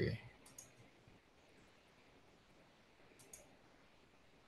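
Near silence on a video-call line, broken by two pairs of faint clicks: one about half a second in and one near the end.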